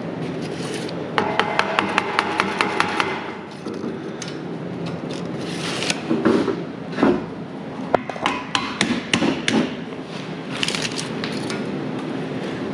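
Light hammer taps on steel, a quick run of about ten evenly spaced strikes with a metallic ring about a second in, followed later by scattered knocks and clatter of steel parts being shifted into position.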